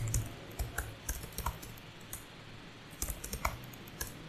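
Keystrokes on a computer keyboard: scattered single key clicks, then a quicker run of several keys about three seconds in.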